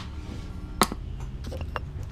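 Handling noise as the camera is picked up and moved: one sharp click a little before the middle, then a couple of fainter clicks, over a low steady hum.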